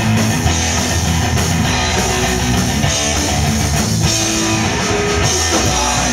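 Hardcore punk band playing live, loud and steady: distorted electric guitars, bass and drum kit.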